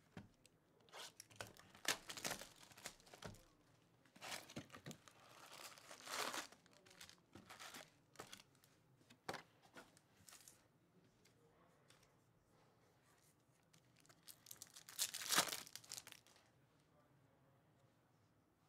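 Quiet crinkling and tearing of a trading-card box's plastic wrap and packaging as it is cut and opened, with a few sharp taps as the packs are set down. Near the end a card pack's foil wrapper is torn open in one louder, rustling rip.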